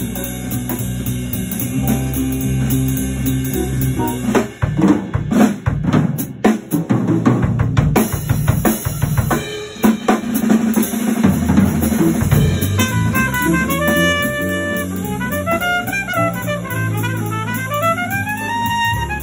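Live jazz ensemble trading with a drum kit solo. A bass line plays for the first few seconds. From about four seconds in the drum kit takes over alone with rapid snare, bass drum and cymbal strikes. Around ten seconds the bass comes back under the drums, and a higher melodic line joins near the end.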